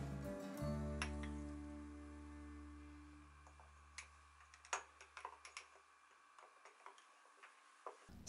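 Background music ends on a held low chord that fades away over a few seconds. Then a metal bar spoon clinks faintly against ice and the glass as the cocktail is stirred, a handful of light irregular clicks.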